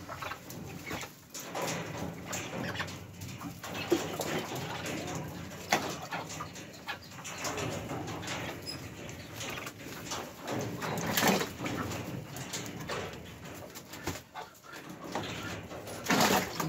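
Young mandarin ducks calling softly in their pen.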